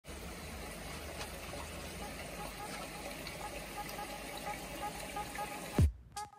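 Steady rush of water running into a koi pond. Near the end a short falling swoosh cuts in and then drops away.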